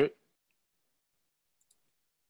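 The end of a spoken word, then near silence with one faint, high tick near the end.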